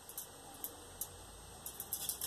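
Faint, scattered small clicks and taps as a clear plastic dome lid is pressed down onto a soft polymer clay base, with the clicks coming closer together near the end.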